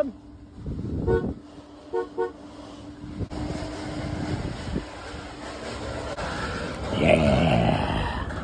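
A car horn sounds with one short toot about a second in, then two quick toots a second later. A louder, noisier stretch follows near the end.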